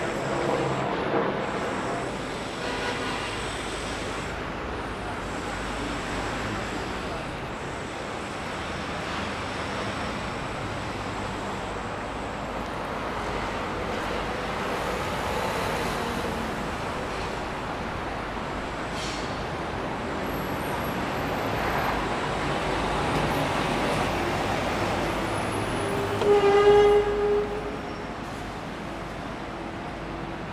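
Busy city street ambience: steady traffic and passing vehicles with the voices of passers-by. Near the end comes a short, loud horn toot.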